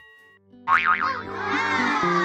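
An outro jingle. A held chime fades out, then after a brief gap, about half a second in, a wobbly cartoon boing-style effect enters and slides down in pitch over low sustained music notes.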